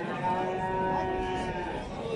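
A single cattle moo, held at a steady pitch for about a second and a half.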